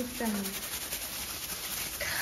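A short spoken word, then a steady faint hiss of room noise with a light crackle.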